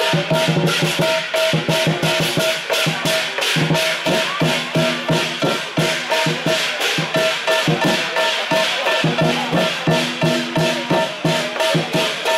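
Southern Chinese lion dance percussion: lion drum, cymbals and gong playing a steady, driving beat of about four strokes a second, accompanying the lion's 'plucking the green' routine.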